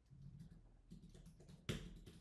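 Faint keystrokes on a computer keyboard as figures are typed, with one louder short noise near the end.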